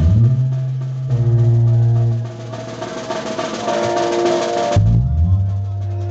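Live banda music: a sousaphone holds long low notes under the snare drum playing a roll with cymbal strokes, and a held chord sounds above them. The chord breaks off about five seconds in and a new low note begins.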